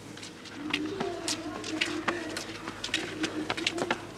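Cross-country skier's poles planting and classic skis kicking on snow during an uphill climb: a run of short, irregular clicks and scrapes. A faint held tone sounds underneath from about a second in.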